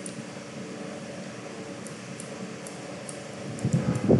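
Steady mechanical room hum, like a running fan, with a few faint light clicks. A short low sound rises just before the end.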